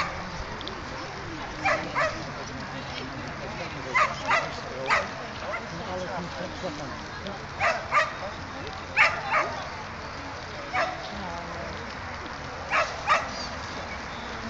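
A dog barking in short, sharp barks, mostly in pairs, every couple of seconds.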